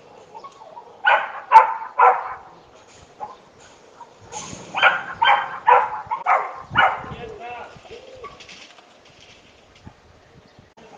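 A dog kept caged all day barking in short repeated bursts, about three barks near the start and then five more a few seconds later, each roughly half a second apart.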